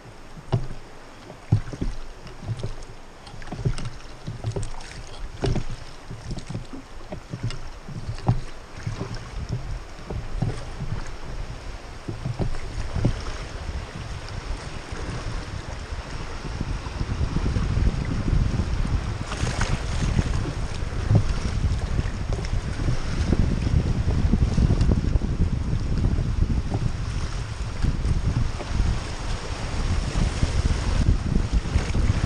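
River water washing around a rowed raft, with irregular splashes in the first half. After about 17 s it builds into a louder, steady rush of rougher water with wind buffeting the microphone.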